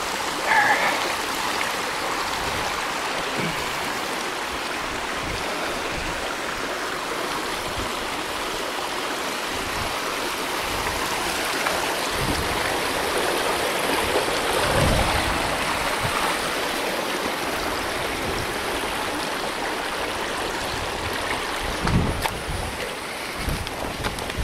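Wind buffeting a handheld phone microphone: a steady rushing noise with gusty low rumbles, and a few louder thumps around the middle and near the end.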